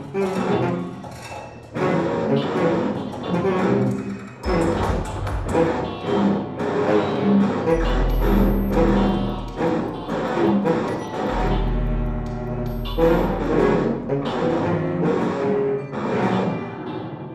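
Contemporary chamber music for tenor saxophone, electric guitar, cello and electronics: a dense run of short, many-layered attacks and notes, with deep low sounds coming in several times from about a third of the way through.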